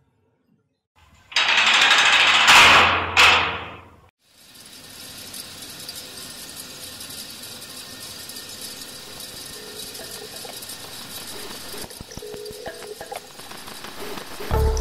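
A loud mechanical rattling for about three seconds, ending in two bangs, then a steady background hiss with a faint hum.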